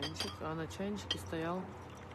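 A few light clinks of porcelain as a teapot with a lid is picked up off a tray, under a woman's voice.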